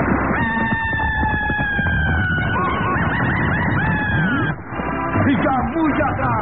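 Horse whinnying, a radio-drama sound effect: a long high call starting about half a second in that slowly falls in pitch, then breaks into a quavering, wavering ending.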